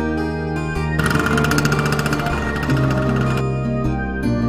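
Plucked-string background music, joined about a second in by a motor scooter engine running with a rapid pulsing buzz. The engine stops suddenly a little over two seconds later.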